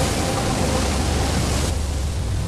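Animated-film sound effect of churning, rushing sea water over a deep rumble. The hiss drops away suddenly near the end.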